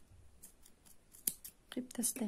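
Small scissors snipping through crochet yarn, a few light sharp clicks, the loudest about a second and a quarter in, as the working yarn is cut.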